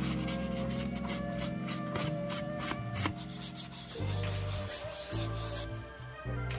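Fine 800-grit wet sandpaper rubbed by hand over a sneaker's leather toe in quick short strokes, about four or five a second, scuffing the factory finish before paint; the strokes die away about halfway through.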